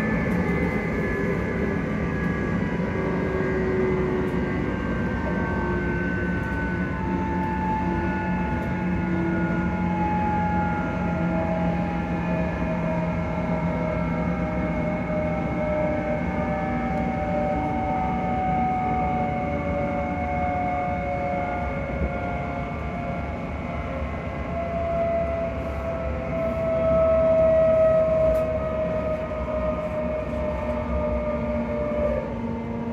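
Inside the passenger saloon of a ScotRail Class 334 electric multiple unit on the move: a steady rumble of wheels and running gear. Over it, the traction motors' whine falls slowly in pitch as the train slows for its next stop. The noise briefly swells near the end.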